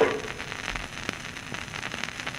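Surface noise of a 78 rpm shellac record: steady hiss with scattered crackles and clicks. The dance band's last note dies away at the start.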